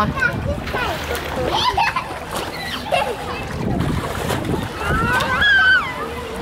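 Busy swimming-pool ambience: many children's and adults' voices overlapping, with water splashing. Near the end a long, high-pitched call rings out above the rest.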